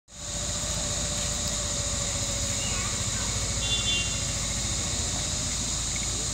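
Steady outdoor background: a high drone of insects over a low rumble, with a brief high chirp about four seconds in.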